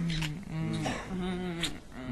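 A voice speaking or cooing in several short, drawn-out phrases, the words unclear.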